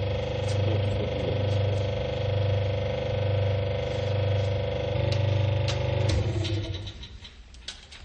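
Steady mechanical hum of a concrete compression-testing machine's hydraulic unit, with a deep pulse that swells and fades about once a second. It shifts in tone about five seconds in and stops about a second later.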